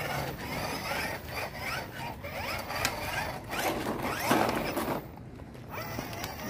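Plastic ride-on toy motorbike rattling and clicking as it is handled and rolled, with many short clicks and scattered short chirping glides over it.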